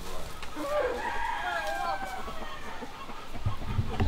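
A rooster crowing once, a drawn-out call lasting about two seconds.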